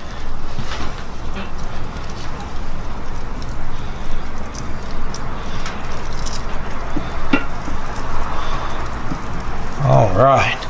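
Lamb chops sizzling on the hot grate of a Big Green Egg kamado grill with faint scattered ticks, over a steady low rumble.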